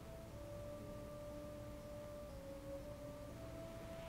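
Faint, soft instrumental background music: slow, pure sustained notes, each held for a second or two before moving to the next.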